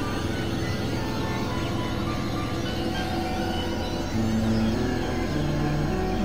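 Experimental electronic synthesizer music: a dark, dense low drone with scattered held tones above it, and sustained low notes coming in about four seconds in.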